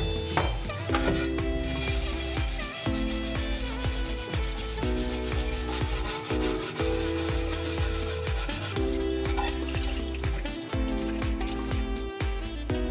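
A plastic scrubbing brush rubbing over a metal case under a running tap, a rough scrubbing noise from about two seconds in until about nine seconds. Background music with a steady beat plays throughout.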